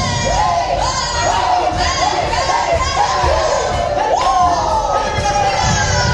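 A group of voices shouting and whooping together over the band, in overlapping calls that rise and fall in pitch about twice a second.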